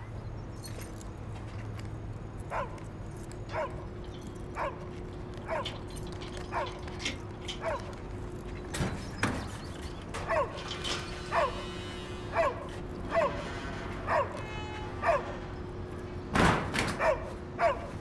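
A dog barking in single short barks, about one a second, over a steady hum; a louder burst of noise comes near the end.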